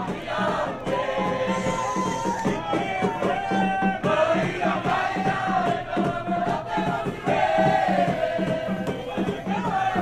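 A crowd singing a song together over a steady drum beat.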